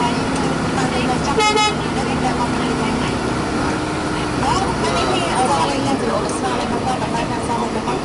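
Road vehicle driving, its engine humming steadily under road noise, with voices talking in the background. One short horn toot sounds about a second and a half in.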